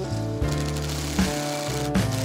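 Background music with guitar and a bass line.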